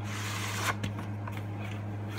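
A plastic VHS clamshell case and cassette being handled by hand: a rustling slide lasting about the first half-second or more, then a few light plastic clicks and taps. A steady low electrical hum runs underneath.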